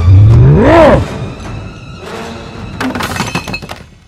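Film-sound monster roar, about a second long, rising and then falling in pitch over a dramatic music score. It is followed about three seconds in by a rapid clatter of cracks and knocks, like something breaking.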